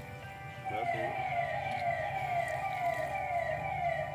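An electronic siren, a repeated falling wail of about two to three sweeps a second, starting about a second in, over background music.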